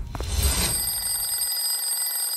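Mechanical twin-bell alarm clock ringing steadily, starting about half a second in.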